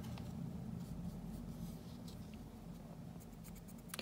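Faint scratching of a paintbrush's bristles being wiped across a paper towel to unload brown paint before dry-brushing, with a few light ticks near the end over a low steady hum.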